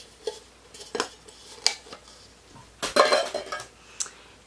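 A glass perfume bottle with a metal cap being handled: a few sharp clicks and clinks, then a short, louder burst of noise about three seconds in.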